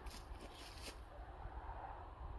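Quiet outdoor background: a low, uneven rumble with a couple of faint clicks, the clearest just under a second in.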